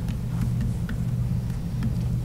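Steady low hum of the meeting room's background noise, with a few faint ticks.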